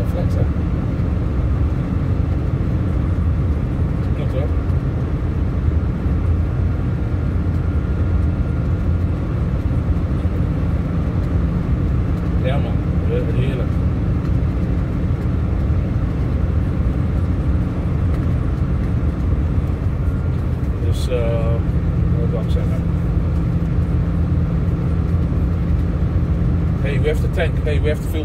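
Steady low rumble of a car's engine and tyres at motorway speed, heard from inside the cabin. Brief faint voices come in about 12 seconds in, again around 21 seconds and near the end.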